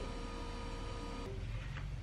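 Steady electrical hum in the room, with faint soft scrapes of a wooden spoon spreading tomato sauce over raw dough.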